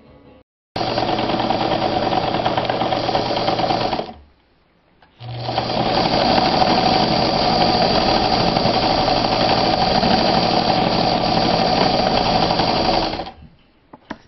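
Sewmor class 15 electric sewing machine running at a steady speed while stitching through layered denim. It runs in two bursts: one of about three seconds that starts suddenly, a brief stop near four seconds, then a longer run of about eight seconds that stops shortly before the end.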